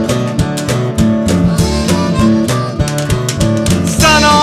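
Instrumental break in a country-blues song: guitar-led band playing with a steady beat, no singing.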